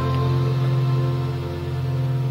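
Waldorf Blofeld synthesizer sounding a sustained pad chord on its 'DivX Pad' preset, the notes held steadily, over a constant low electrical buzz from the speaker system.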